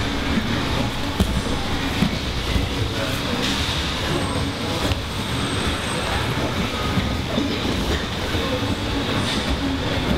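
Steady noise of a busy grappling room, with a couple of sharp thumps about one and two seconds in, like bodies hitting the mats.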